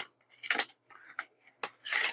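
Thin white cardboard sleeve rustling and scraping in the hands as it is opened and a coiled USB-C cable is slid out of it: several short, dry scrapes.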